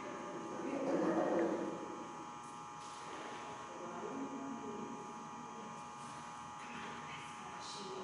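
Indistinct, quiet voices, loudest about a second in, over a steady electrical buzz.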